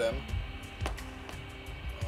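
Rotary mode switch on a President Jackson CB radio clicking as it is turned to test its contacts, two distinct clicks, over steady tones and music-like sound from the set or the soundtrack. The switch is working properly.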